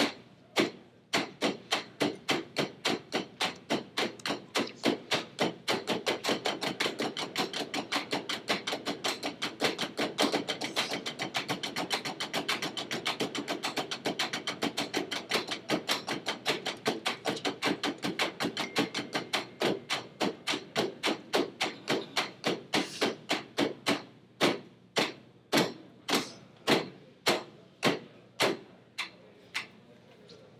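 Several drumsticks striking practice pads together in a percussion rhythm exercise. A steady beat of about two strokes a second speeds into fast subdivided strokes, eighth notes through triplets to sixteenths, then thins back to the steady beat near the end.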